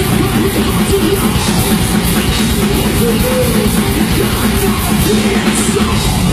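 Heavy metal band playing live: distorted electric guitars and a drum kit at a steady, loud level, with the vocalist singing over them.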